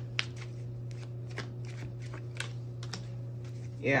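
A deck of tarot cards being shuffled by hand: a run of light, irregular card clicks and snaps, over a steady low hum.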